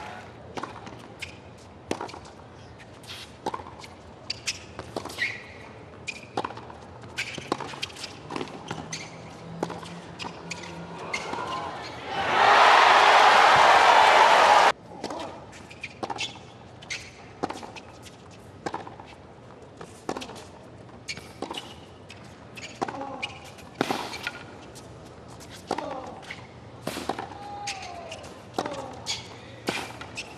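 Tennis rallies on a hard court: a string of sharp pocks as racquets strike the ball and it bounces. About twelve seconds in, the stadium crowd applauds for a couple of seconds, the loudest sound here, and the applause cuts off suddenly before the next rally begins.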